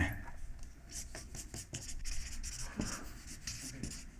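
Felt-tip marker writing on flip-chart paper: a run of short scratchy strokes as the words are written.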